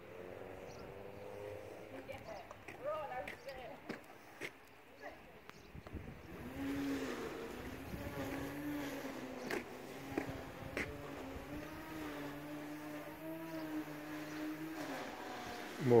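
A bee buzzing near the microphone: a steady droning hum that starts about six seconds in and holds on, over a few light clicks.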